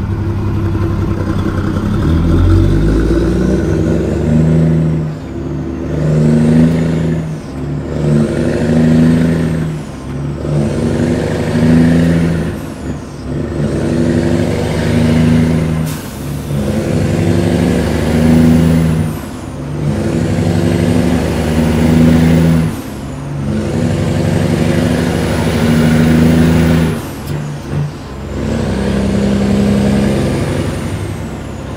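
Peterbilt 379's Caterpillar 3406E diesel pulling away and working up through the gears of its 18-speed transmission, heard inside the cab. Engine pitch and a high turbo whistle climb with each gear, then drop at each shift, about every three seconds.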